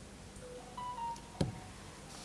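Quiet room tone broken by one sharp click about one and a half seconds in, a key or mouse click on the presentation laptop. A few faint short tones sound just before it.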